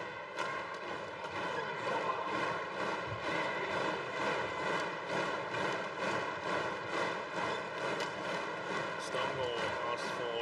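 Badminton arena crowd noise during a rally, crossed by a quick, even run of sharp hits, about two to three a second.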